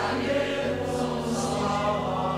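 A choir or congregation singing a slow hymn in chorus, with long held notes over a steady low accompaniment that moves to a new note about half a second in.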